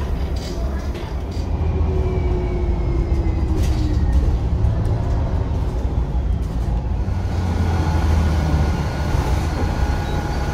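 Voith DIWA automatic gearbox on a city bus whistling under braking: a whine of several tones gliding downward as the bus slows, with the low engine and road rumble heard from inside the cabin. Later a steadier whistle comes in.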